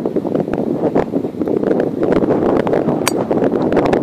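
Wind buffeting the microphone throughout, with a single sharp, ringing click about three seconds in: a golf driver striking a teed ball.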